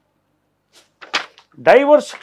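A short hush, then a brief hiss about a second in, then a man's voice starting to speak again near the end.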